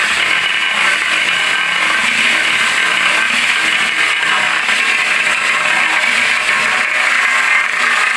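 Angle grinder running continuously at full speed, its spinning disc pressed hard against the edge of a large ceramic tile to vibrate it in a tile-adhesive strength test: a steady, unbroken grinding whine.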